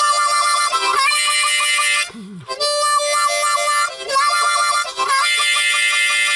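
Key-of-C diatonic harmonica, mainly the four-hole draw note, played with the cupped hands opening and closing over it for a fast pulsing wah-wah. The five-hole draw is mixed in. It comes in short phrases with brief breaks between them.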